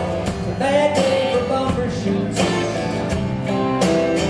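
Live band music: a strummed acoustic guitar with electric guitar, bass and drums.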